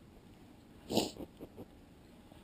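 A single short, sharp snort or sneeze-like burst about a second in, the loudest sound. Then come a few soft taps, like the steady pokes of a felting needle punching into wool.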